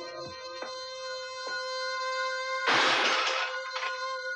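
Dramatic film background score: a held synthesizer chord with a few soft hits, then a loud burst of noise about three seconds in.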